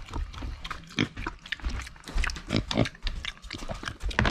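Micro pig grunting in a quick, uneven series of short grunts, excited at feeding time while its meal is being prepared.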